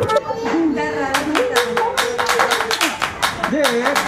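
Small firecrackers popping in rapid, irregular succession, with a voice and music underneath.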